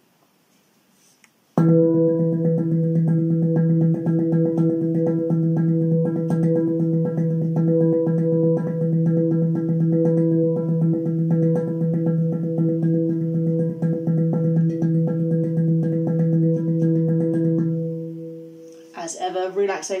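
Handpan played in a fast, even single-stroke roll, hands alternating, the rapid strokes sounding over one note that rings steadily beneath them. The roll starts about a second and a half in and stops near the end, the note dying away.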